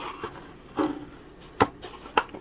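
Hands handling a balsa-wood model boat hull, with one sharp knock about one and a half seconds in.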